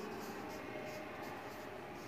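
A felt-tip marker writing on a whiteboard: a string of faint, short, irregular strokes as letters are drawn.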